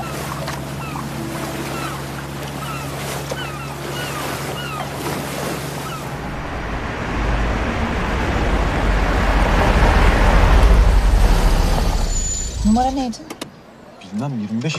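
A boat's engine hums steadily over churning water, with a few short high calls over it. About six seconds in, an old Tofaş Murat 131 (Fiat 131) saloon drives up a cobbled street: a rumble of engine and tyres that grows louder to a peak and then falls away near the end.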